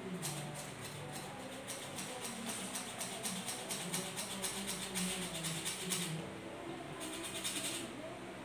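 Handheld flour sifter being worked to sift flour, clicking and rattling at about five clicks a second. It pauses briefly near the end, then starts again.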